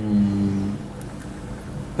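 A man's low, drawn-out hesitation hum lasting under a second, falling slightly in pitch, while he gathers his thoughts before answering a question.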